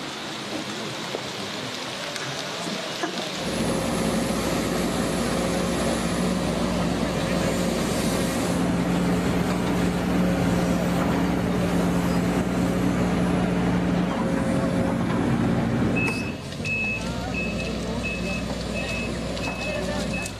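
Excavator's diesel engine running steadily under the noise of people working. After a cut near the end, a backup alarm beeps about one and a half times a second.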